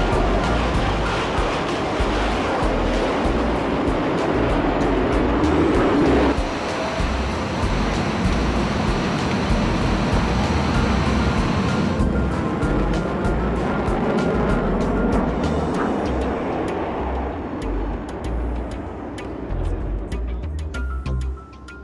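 Music over the steady noise of Concorde's Olympus 593 turbojets during the takeoff run and climb, heard from inside the cabin.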